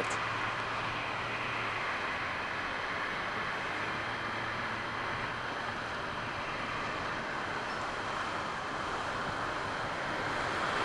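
Steady, even background noise with a faint low hum in the first two seconds, and no distinct events.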